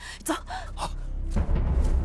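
A quick sharp breath or hissed word, then dramatic film score that swells in over a deep low rumble about a second in.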